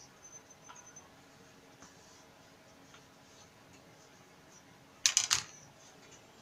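A hard plastic set square set down on the cutting table: a brief clatter of a few sharp clicks about five seconds in, after faint handling noises.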